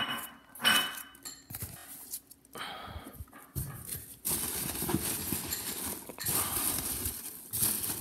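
Hands handling a cardboard shipping box and digging into styrofoam packing peanuts: a few light knocks and scrapes of the cardboard flaps, then continuous rustling and squeaking of the foam peanuts from about halfway in.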